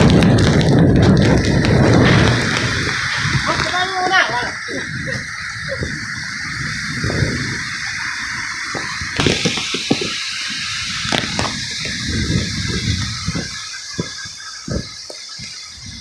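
Typhoon wind and heavy rain: gusts hit the microphone hard for the first two seconds or so, then ease to a steady hiss of rain with irregular gusts striking the mic. A voice calls out briefly about four seconds in.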